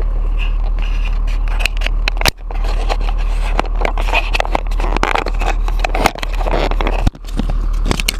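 Heavy snow-clearing machine's engine running steadily under load, with irregular scraping and crackling clicks as its front end works through packed snow.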